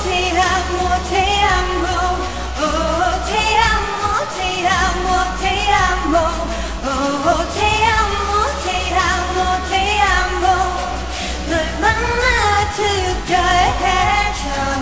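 A woman singing a K-pop song live, with the melody held in long, wavering lines. The instrumental backing has been stripped out, leaving only a steady low bass underneath the voice.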